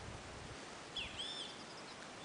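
A bird calling: a short cluster of high chirps that rise and fall, about a second in, over faint steady outdoor background noise.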